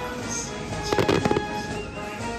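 Fireworks shells bursting: a quick cluster of sharp bangs about a second in, over steady music playing underneath.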